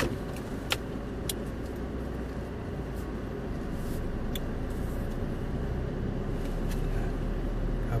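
Steady low rumble of a car driving slowly, heard from inside the cabin, with a few faint clicks in the first half.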